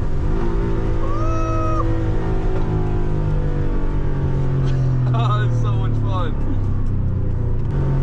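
Porsche 964's air-cooled flat-six running at fairly steady revs, heard from inside the cabin while driving on track, with a short high squeal about a second in.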